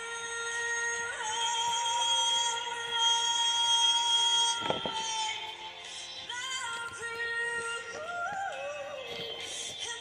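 A song playing: a singing voice holds long notes over backing music, sliding up into each note, with a falling run of notes near the end.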